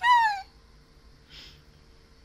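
A woman's high-pitched squeal behind her hands, falling in pitch and cut off after about half a second, then a short breath about a second and a half in.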